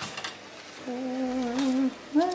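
A woman humming one held note for about a second, after a few light clicks at the start.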